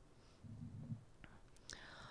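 Near silence, with a woman's faint low hum about half a second in, a small click, and a soft intake of breath near the end.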